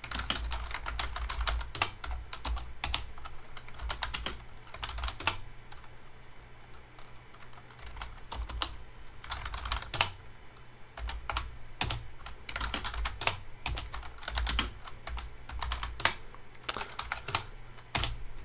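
Typing on a computer keyboard: irregular runs of keystroke clicks with short pauses between them, over a faint steady low hum.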